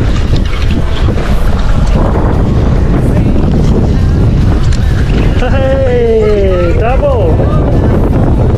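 Strong wind buffeting the microphone aboard a boat at sea, a loud steady rumble. About five and a half seconds in, a drawn-out cry slides down in pitch and ends in a short wobble.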